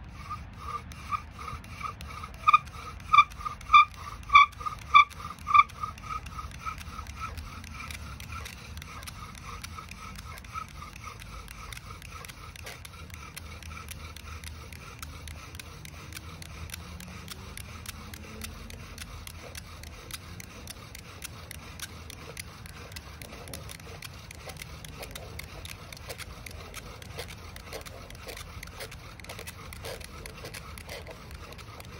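Vintage Boy Scouts of America bow drill spun by its leather-thonged bow: a high, pitched squeak on each stroke, a little under two a second, loudest in the first few seconds and fading out by about nine seconds in. After that a steady, rhythmic dry rubbing of the wooden spindle on the fireboard.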